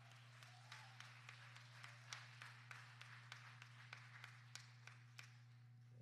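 Faint, scattered applause from a congregation: a few hands clapping irregularly, tailing off near the end. A steady low hum runs underneath.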